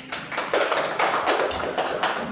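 A small group of people clapping: a short round of applause of many quick, overlapping claps, growing louder about half a second in.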